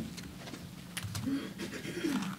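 Quiet pause at a lectern microphone: a steady low electrical hum with a few light clicks and handling noises, and faint, low murmured voices.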